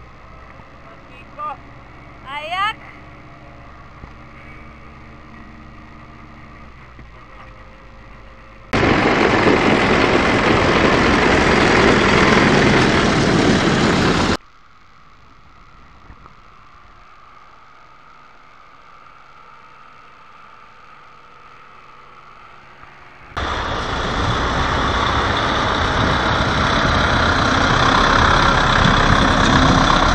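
Tractor diesel engines running during snow clearing with front loaders and a blade, first heard steadily from inside the cab. There are a couple of brief rising squeaks about two seconds in. Two long stretches are much louder, one starting about nine seconds in and one from about twenty-three seconds.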